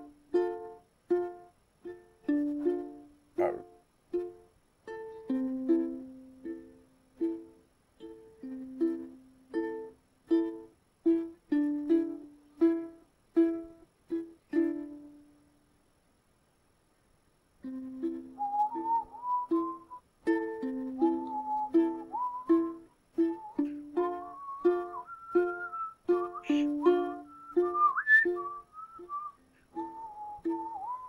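Music on a plucked string instrument, short notes in a steady rhythm. It breaks off for about two seconds halfway through, then resumes with a wavering high melody line over the plucking.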